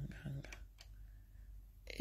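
Two faint short clicks about a third of a second apart over quiet room tone.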